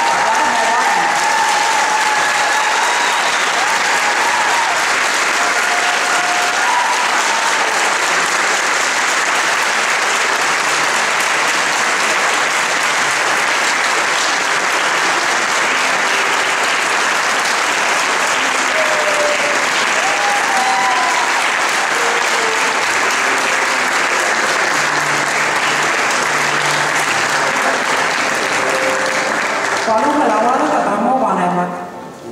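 A hall audience applauding steadily and at length, with a few voices faintly heard through the clapping.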